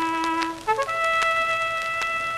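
Bugle on an early acoustic disc recording playing a held note, then a brief higher note, then a held note an octave above the first. Record crackle runs underneath.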